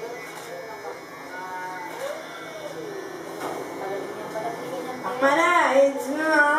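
Electric hair clippers buzzing steadily as they trim at the back of the neck, under faint voices; louder speech comes in near the end.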